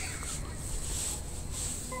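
Low steady hum of an electric train standing at the platform, with a few short hissing sounds about half a second apart.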